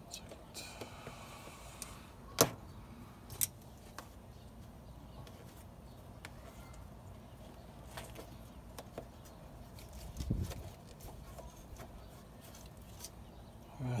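Scattered clicks and clinks of hand tools and fingers working at the hose clamp on a Mazda Miata's intake crossover tube, over a faint steady background. One sharp click about two and a half seconds in is the loudest, with another a second later and a low thump about ten seconds in.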